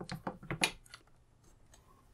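A few small plastic-and-metal clicks as the 12x zoom lens is fitted back onto the JVC KY-210 camera's lens mount, all within the first second, then quiet.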